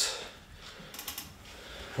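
An upright exercise bike clicks faintly a few times in quick succession about a second in.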